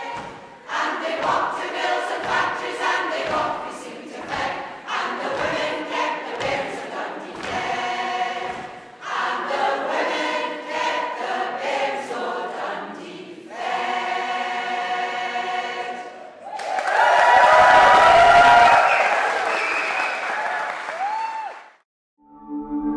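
A large women's choir singing without accompaniment, in phrases with short breaths between them. From about 16 seconds in, a louder spell of applause and cheering over the last held notes fades out just before the end.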